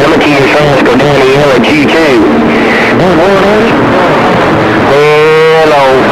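CB radio receiver playing garbled, overlapping voices of distant stations through static, typical of long-distance skip on the 11-metre band. Near the end one louder, held, wavering voice comes through over the others.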